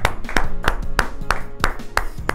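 Hand claps in a steady rhythm, about three a second, over background music.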